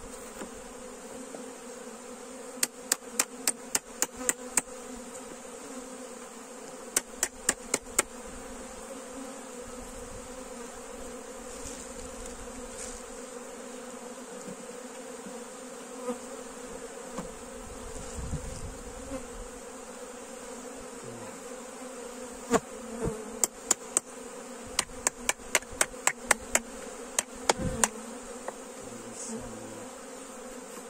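A honeybee colony buzzing steadily around an open hive. Several quick runs of sharp taps cut through it, about four or five a second: a metal hive tool knocking oversized frames down into the hive body.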